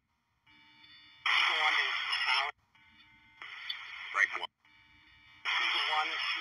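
Military UHF air-control radio traffic: three short keyed transmissions heavy with static and garbled, unintelligible speech, each switching on and off abruptly, with a faint steady hum in the gaps.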